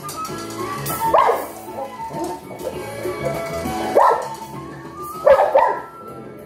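A 10-month-old Cane Corso barking three times, about a second in, at about four seconds and again near the end, over steady background music.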